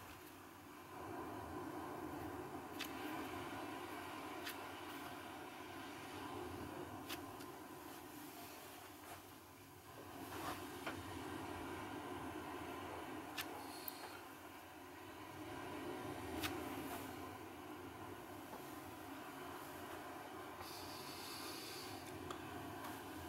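Quiet room tone: a faint steady hiss with a few slow, soft swells and several light ticks scattered through it.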